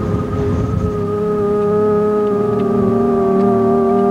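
Background music: a sustained organ-like drone of several held notes, with a low rumble beneath it that stops about a second in.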